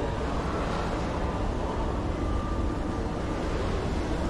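Steady running hum and low rumble of an escalator, with the even background noise of a shopping-mall interior.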